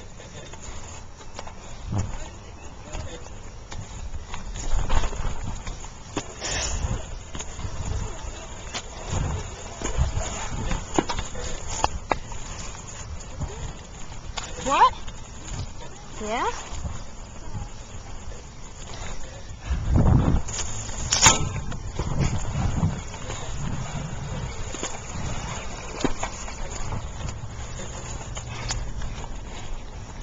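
Riding noise from a bicycle on a rough road, recorded on a handheld camera: a steady rumble with wind buffeting the microphone and scattered rattles and knocks, the heaviest buffet about twenty seconds in. A few short rising squeaks come in the middle.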